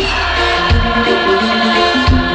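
Zimbabwean band playing live through a large outdoor PA: several voices sing held notes in harmony over bass and a drum hit.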